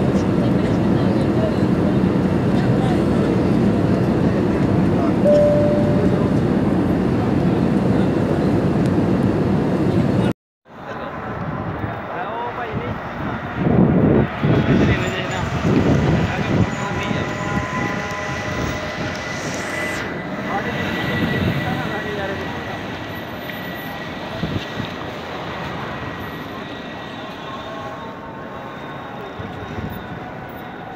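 Steady jet airliner cabin noise, the engines and rushing air heard from a window seat, for about ten seconds. Then an abrupt cut to a city street at night: people's voices and general street noise, varying in loudness.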